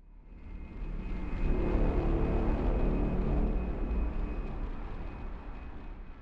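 Jet airliner flyby sound effect: a heavy rumble with a faint high whine that swells up from silence over about a second and a half, holds, then slowly fades away.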